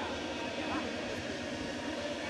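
Steady murmur of an arena crowd, many voices talking at once, with a voice or two rising briefly out of it.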